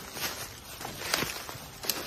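Footsteps crunching and rustling through dry fallen leaves on a forest floor, several people walking, with an uneven run of separate steps.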